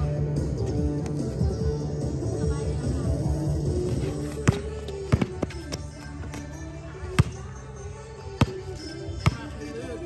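Background music with held notes, over which a basketball bounces on a hard court. There are about five sharp bounces in the second half, roughly a second apart.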